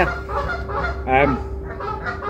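A single short honking bird call about a second in, over a steady low hum.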